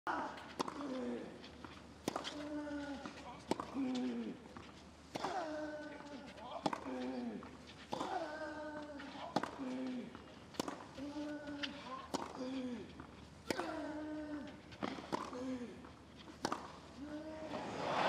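A long tennis rally on a clay court: racket strikes on the ball about every one to one and a half seconds, most of them paired with a short, loud grunt from the player hitting. Crowd noise starts to swell right at the end.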